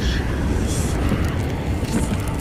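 Cinematic logo-intro sound effects: a steady deep rumble with a brief whoosh about three-quarters of a second in.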